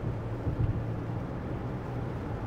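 Steady road noise inside a car's cabin on a wet freeway in heavy rain, with a low, even hum from the car.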